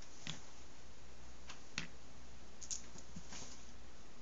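Glass marbles clicking as a game piece is picked up and set into a board of PVC pipe rings: about five short, sharp clicks spread out, the sharpest a little under two seconds in.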